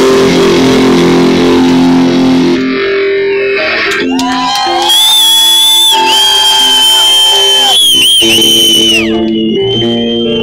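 Live rock band playing loud, with distorted electric guitars and bass. Midway a lead guitar holds a long, high, wavering sustained note.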